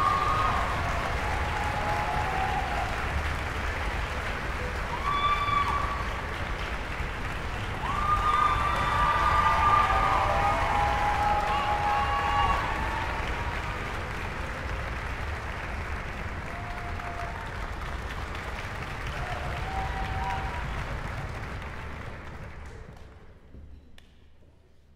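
Audience applauding in a large concert hall, dying away near the end.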